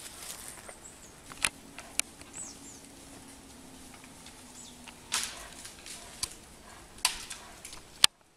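Scattered sharp cracks and snaps of wood, four or five in all, as a brown bear caught by a leg in a wire snare wrenches at the young tree the snare is tied to, trying to break it and get free. A small bird chirps briefly in between.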